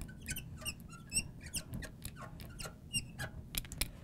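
Felt-tip marker squeaking and ticking on a glass lightboard as a word is written out, a quick run of many short squeaks, one per stroke.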